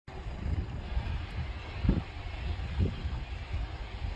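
Wind buffeting the microphone in uneven gusts, a low rumble over a steady hiss.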